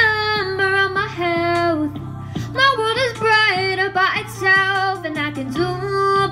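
A female vocalist singing a pop song, her melody gliding and held between notes, over a steady instrumental backing.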